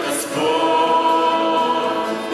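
A small mixed group of women's and men's voices singing a Russian-language worship song in harmony through microphones. After a short break near the start, they hold one long note.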